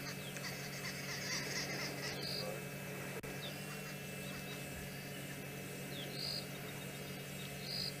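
Faint insects calling, crickets among them: high-pitched buzzing trills, one longer near the start and a few short ones later, over a steady low hum.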